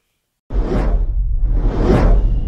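Cinematic whoosh sound effects over a deep rumble, from a logo-reveal animation: silence for the first half second, then a sudden start, one whoosh soon after, and a second whoosh swelling to a peak at the end.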